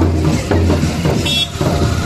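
Motorcycle engine running at low speed close by, a steady low hum.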